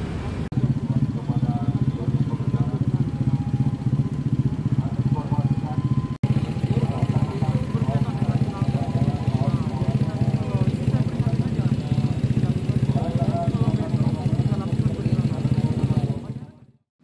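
Honda Vario 150 scooter's single-cylinder engine idling through an aftermarket slip-on exhaust in place of the stock muffler: a loud, steady, low pulsing exhaust note, the kind of noisy exhaust that draws a police warning.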